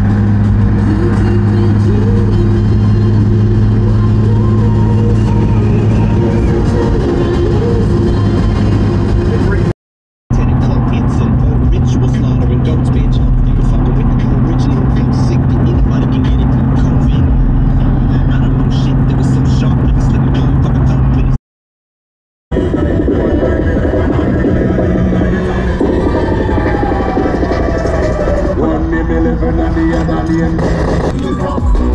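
Car driving at motorway speed heard from inside the cabin: a steady engine and road drone, with music over it. It comes in three stretches split by two brief silent cuts, about a third and two thirds of the way through.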